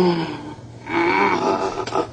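Two drawn-out wordless vocal sounds from a person's voice: a short one right at the start and a longer, wavering one about a second in.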